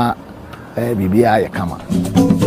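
Speech: a voice speaking two short phrases, with a pause of about half a second between them.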